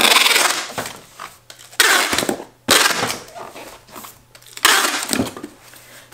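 Packing tape pulled off a handheld tape gun dispenser onto a cardboard shipping box, in four loud tearing pulls of about half a second to a second each.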